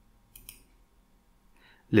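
A computer mouse clicking twice in quick succession, with near silence around it.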